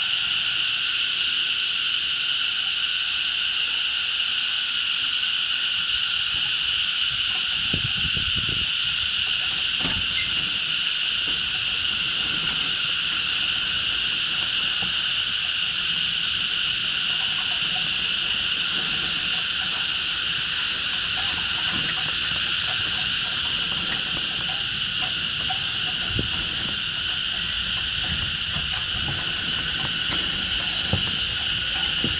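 A loud, steady, high-pitched chorus of insects droning without a break in the trees.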